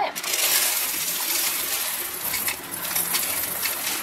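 Whole roasted coffee beans poured from a bag into the empty plastic bean hopper of a Philips automatic coffee machine: a steady rush of many small hard beans rattling against the hopper and each other.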